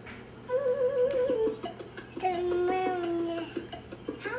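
A young child's voice singing two long held notes: the first higher and wavering, the second lower and steady.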